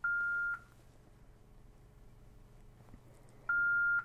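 Two beeps from a Yaesu FTM-500D mobile transceiver, each one steady tone of the same pitch lasting about half a second: the first as OK is pressed to restore all memories from the SD card backup, the second near the end as the restore completes.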